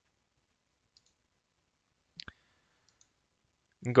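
Near silence broken by a single mouse click, a quick press-and-release pair of ticks, a little over two seconds in.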